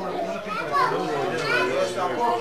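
A group of young children talking and calling out at once, their high voices overlapping.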